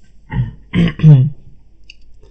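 Short wordless vocal sounds from a man's voice: three brief bursts within about a second, the last the loudest.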